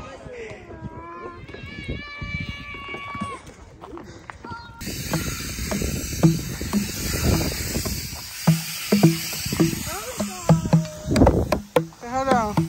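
A child striking the tuned pads of an outdoor playground drum set with his hands, in short low pitched thumps, some in quick runs, beginning about halfway through.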